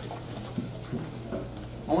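A group of children getting up from their chairs: shuffling and light irregular knocks of chairs and feet, with faint murmuring voices over a steady low hum.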